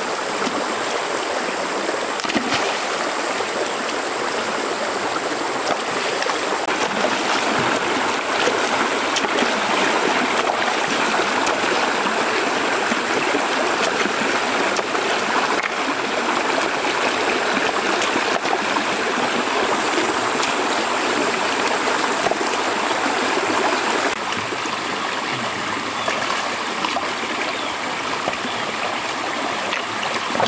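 Shallow stream running over rocks, a steady rushing of water, with a few brief splashes as stones are moved in the water.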